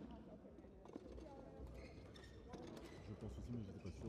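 Faint, indistinct voices of people talking, with no words made out.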